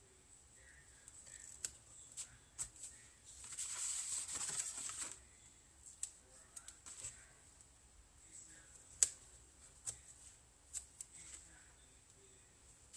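Craft adhesive tape pulled off its roll in one long rip about three and a half seconds in, amid light ticks and rustles of tape and cardstock being handled, peeled and pressed down.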